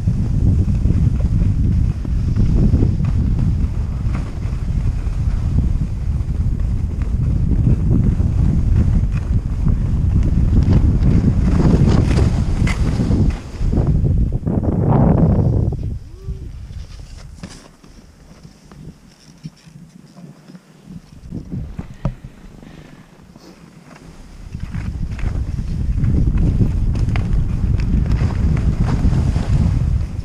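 Wind buffeting a GoPro's microphone as the wearer skis downhill, with skis scraping over packed snow. The noise drops away for several seconds past the middle as the skier slows, then builds again as the run picks up.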